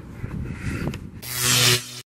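Wind rumbling on the microphone with a few soft knocks, then just past a second in a loud hissing rush with a low steady hum that cuts off suddenly.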